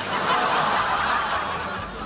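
Several people laughing together, a dense unpitched laughter that fades near the end.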